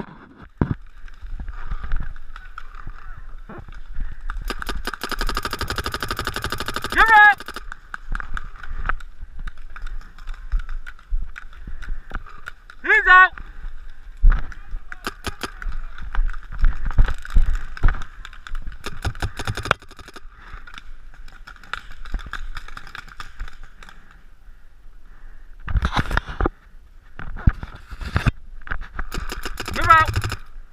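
Paintball marker firing a fast string of shots for about three seconds, followed later by scattered single shots, with short distant shouts from players.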